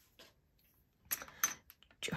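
A sheet of copier paper being handled and laid flat on the desk, with a short rustle and small handling taps about a second in.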